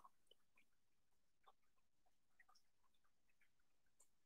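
Near silence: the microphone picks up nothing but very faint scattered specks of noise.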